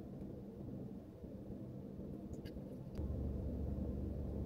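Low steady hum inside a car cabin, which grows louder about three seconds in, with a few faint small clicks just before.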